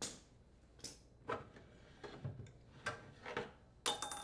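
Light, irregular clicks and knocks, about seven in all, as a washing machine's transmission is worked loose and slid out of its mounting.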